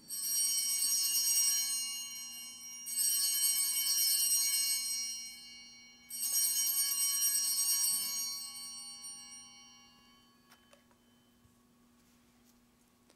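Altar bells rung three times, about three seconds apart, each ring a shimmering cluster of high bell tones that fades away, the last dying out about ten seconds in. They mark the elevation of the consecrated host at Mass.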